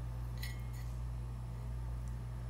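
Steady low hum of room tone, with a brief faint click about half a second in.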